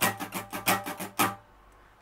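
Acoustic guitar strummed in quick, evenly spaced accented strokes with no chord fretted, playing the syncopated rhythm of an Irish reel strumming pattern. The strumming stops about one and a half seconds in.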